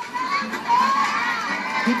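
Studio audience cheering and shouting, many voices at once, rising about half a second in.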